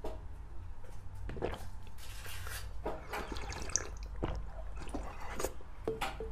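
Close-miked drinking from a small glass: gulps, swallows and wet liquid sounds at irregular intervals.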